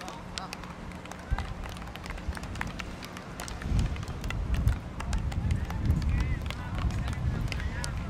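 Outdoor field-hockey pitch ambience: scattered voices calling, with many sharp clicks of sticks striking the ball. A low, uneven rumble sets in about halfway and grows louder.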